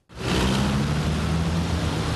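City street traffic: vehicle engines running with a steady low hum under a wash of road noise, starting abruptly.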